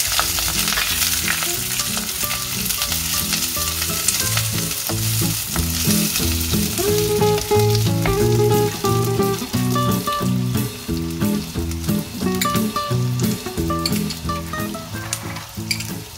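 Onion, chillies and curry leaves sizzling in hot oil in a clay pot as a wooden spoon stirs them; the sizzle is strongest in the first few seconds. A run of low steady notes that change pitch in steps runs beneath it.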